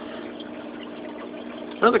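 Steady hum of a reef aquarium's circulation pump, with water moving in the tank. A man starts speaking near the end.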